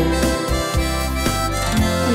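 A harmonica playing a melodic fill between sung lines of a schlager song, over steady bass and backing-band accompaniment.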